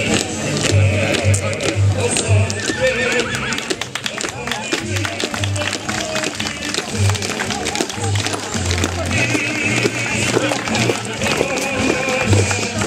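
A band playing a march, with a steady bass-drum beat about twice a second.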